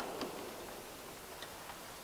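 A pause in a man's speech over a microphone: faint room hiss with a few soft, isolated clicks, one about a quarter second in and another about a second and a half in.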